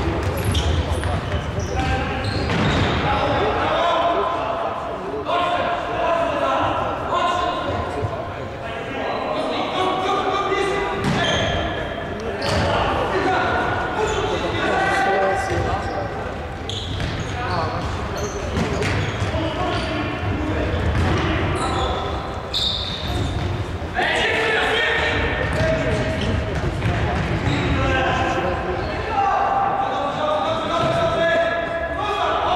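A futsal match on a wooden sports-hall floor: the ball is kicked and bounces over and over while players shout and call to each other, everything echoing in the large hall.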